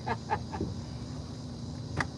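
Steady, faint chorus of evening insects chirring from the riverbank over a low background hum, after a few trailing syllables of a man's voice at the very start.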